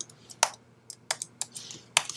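Computer keyboard keys being typed, a handful of separate keystrokes at an uneven pace as a password is entered.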